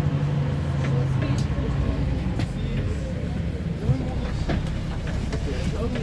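A city bus heard from inside the cabin while it moves: a steady engine hum and road rumble, the hum easing after about two seconds, with light rattles and background chatter from passengers.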